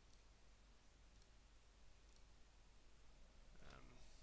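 Near silence: room tone with a few faint computer mouse clicks, about a second apart.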